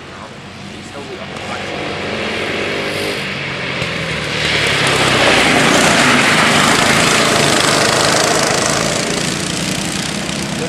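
Honda cadet kart's single-cylinder four-stroke engine passing close by at speed, growing louder to a peak about halfway through and fading as it pulls away.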